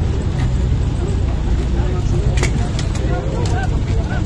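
A steady low engine idle under the indistinct talk of a crowd of bystanders, with a few short clicks about two and a half seconds in.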